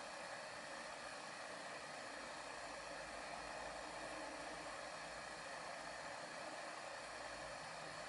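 Steady faint hiss with no distinct events: background noise of the recording or room.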